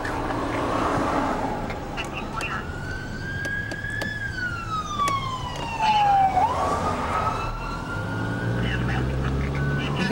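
Emergency vehicle siren in a slow wail: it rises, sweeps down to a low point about six seconds in, then climbs again. It runs over the steady low hum of the car's engine and road noise.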